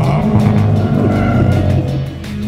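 Racing sedans' engines running as the cars drive through a corner on the circuit, steady with a slight rise and fall in pitch.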